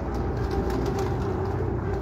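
Domestic high-flyer pigeons cooing, a steady low cooing over a constant low rumble.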